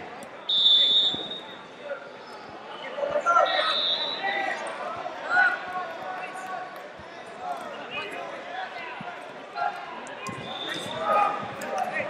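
Wrestling shoes squeaking on the mat in short, sharp bursts as two wrestlers grapple, with voices calling out in between.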